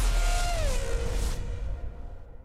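Intro ident music and sound design: a deep rumble under a whoosh, with a tone that slides down in pitch. The whole sting then fades out.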